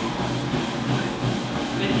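Home treadmill running: a steady motor and belt hum under the rhythmic noise of a person running on it.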